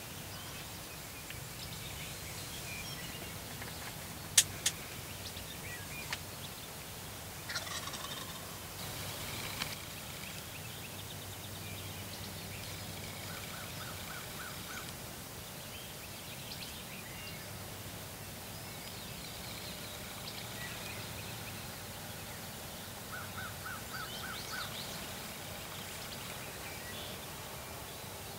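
Wild turkeys calling in a field: two short series of five or six evenly spaced notes, one a little past the middle and one near the end. A single sharp click about four seconds in is the loudest sound, with faint chirps of small birds.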